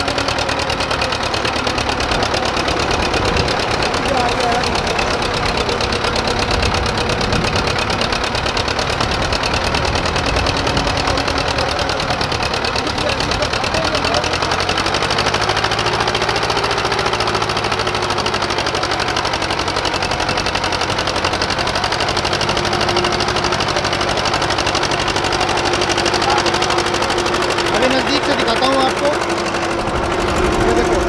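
HMT 2511 tractor's two-cylinder diesel engine running steadily with a rapid, even beat as it pulls a fully loaded sugarcane trolley whose wheels are driven from the tractor's PTO shaft. The engine is not being worked hard, because the PTO-driven trolley wheels take much of the load.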